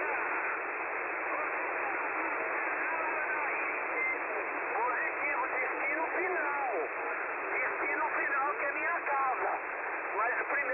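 Shortwave voice traffic on the 11-meter band received in lower sideband: voices in a steady hiss of static, clearest from about halfway through. The narrator takes the voices for freebanders or dispatchers in other countries.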